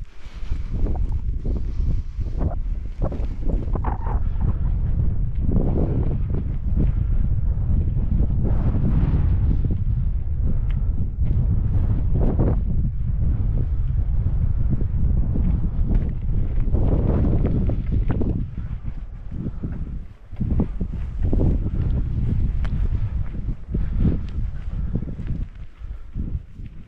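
Wind buffeting the camera's microphone in gusts, loud and rumbling, with a brief lull about twenty seconds in.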